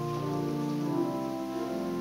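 Church pipe organ playing slow sustained chords, the held notes shifting to new pitches a few times.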